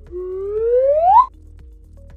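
Intro sound effect: a single whistle-like tone gliding steadily upward for about a second, then cutting off sharply, over a quiet music bed.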